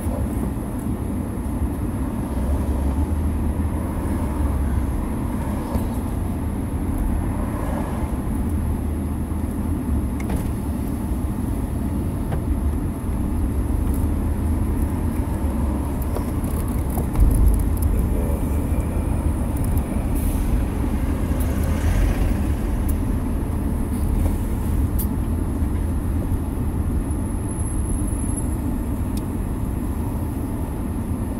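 Steady low rumble of a car's engine and road noise heard inside the cabin while it is driven. A brief louder thump comes about seventeen seconds in.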